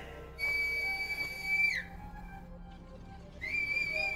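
Two long, steady, high finger whistles, calling for a horse: the first drops in pitch as it ends, and the second starts near the end.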